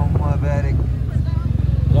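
Yamaha maxi-scooter engine running steadily at low revs, with a voice heard over it.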